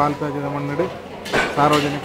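Metal dishes clattering in a crowded dining hall, loudest in a short burst a little past the middle, over a man's voice held on long, level notes.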